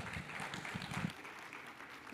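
An audience applauding, dying down toward the end.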